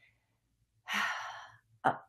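A woman's breathy sigh, an exhale about a second in that fades out over half a second, followed near the end by a short voiced sound.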